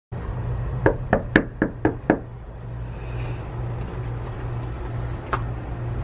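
Knuckles knocking on a panelled front door: six quick raps, about four a second, starting about a second in, over a steady low hum. A single click follows near the end.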